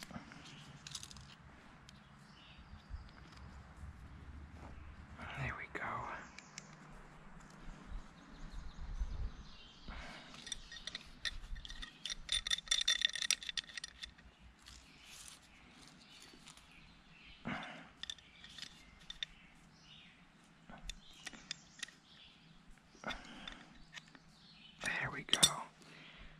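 Close handling sounds of a garden-hose repair: thread seal tape being wrapped onto a brass hose fitting and the fitting worked into the hose with pliers, heard as scattered clicks and rustles. About ten seconds in comes a denser spell of rapid scraping ticks lasting a few seconds.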